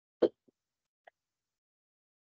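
A single short cough, followed by two much fainter small sounds.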